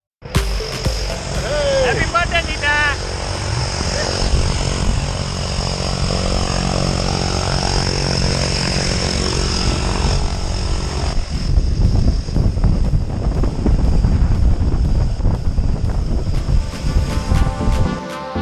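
Turboprop aircraft engines running: a steady high whine over a deep propeller drone, with brief voices near the start. About halfway through the sound turns rougher and noisier.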